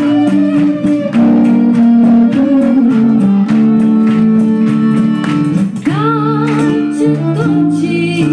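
Balkan gypsy band playing live: a bowed violin carries a melody of long held notes over accordion, double bass and a hand drum. A woman's singing, with a wavering pitch, comes in near the end.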